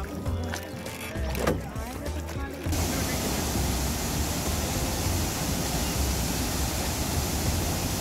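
A boat's motor running low on the river with faint voices, then about three seconds in an abrupt cut to the steady rushing of a large waterfall, water pouring over rock, which is louder and fills the rest.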